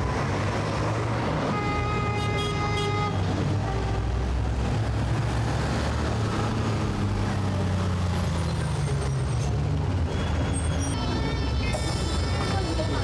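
City street traffic, with the low, steady rumble of city bus and car engines passing a bus stop. A brief high-pitched tone sounds about a second and a half in, and more high tones come near the end.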